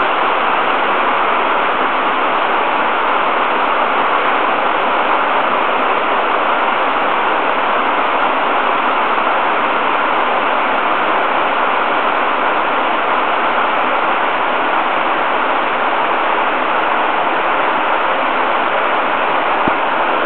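Mountain beck rushing over rocks as white water, a steady, even noise.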